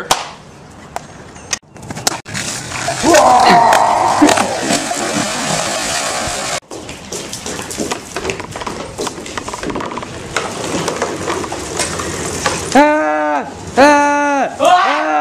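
Bicycle tyres rolling over wooden gazebo deck boards, a steady rushing noise with small clicks and rattles, with a laugh early on. Near the end a voice shouts in long rising-and-falling calls.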